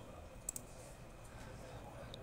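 A quick double click of a computer mouse about half a second in, over faint room tone.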